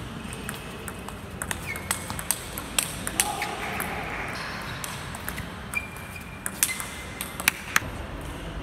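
Table tennis rally: the plastic ball clicking off the rackets and the table in an irregular run of sharp knocks, with a few brief high squeaks from shoes on the sports floor.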